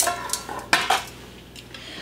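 A spoon clinking and knocking against a metal container and a glass mixing bowl as butter is scooped out and dropped into flour. There are a few clinks in the first second, then it goes quieter.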